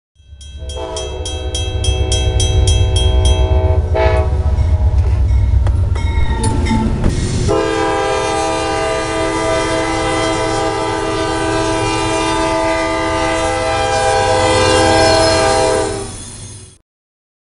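CSX freight train's diesel locomotives sounding a multi-note air horn for a grade crossing, over heavy engine rumble. A crossing signal bell rings about four times a second in the first few seconds, and a long steady horn blast begins about seven seconds in.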